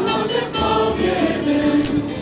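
A choir singing a church hymn, several voices holding long notes that move slowly from pitch to pitch.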